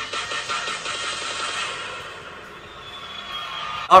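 Music from a televised dance performance playing with a faint beat, thinning out and getting quieter in the second half.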